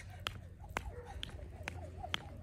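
Jump rope striking the exercise mat on each turn, a sharp click about twice a second (four clicks), during one-foot skipping.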